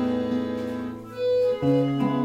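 Accordion holding sustained chords over acoustic guitar accompaniment, changing to a new chord about one and a half seconds in.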